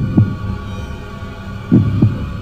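Logo-intro sound effect: low heartbeat-like double thumps, one pair near the start and another near the end, over a steady droning hum that fades away.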